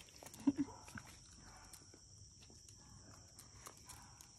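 Night insects chirring steadily and high-pitched, with scattered light taps of a dog's claws on concrete as she moves about and rears up. A short low double sound about half a second in is the loudest moment.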